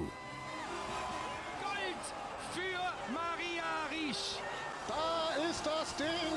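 Excited voices shouting in jubilation: rising-and-falling whoops and cries of joy, in a cluster about two seconds in and again near the end, with a steady held tone underneath.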